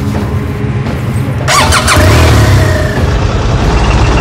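A BMW R 1200 GS boxer-twin motorcycle engine starting about a second and a half in, with a sharp sound sweeping down in pitch, then running with a low, rapid pulse, under music.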